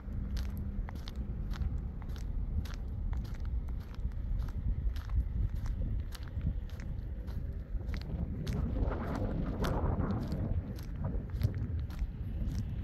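Footsteps of a person walking on a paved road, about two steps a second, over a steady low rumble. A louder swell of noise rises and fades about nine to ten seconds in.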